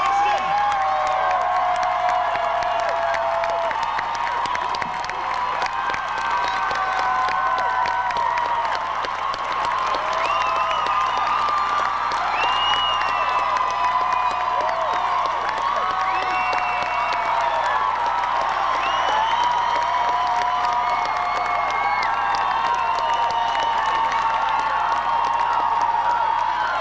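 Large outdoor concert crowd cheering and applauding, with many high-pitched screams and whoops over a steady roar of clapping.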